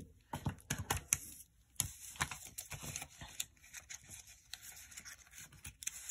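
Sheets of paper planner stickers being handled and sorted by hand, making scattered rustles, short clicks and scrapes.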